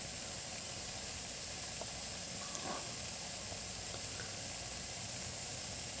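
Steam radiator hissing softly and steadily as the steam heat comes up.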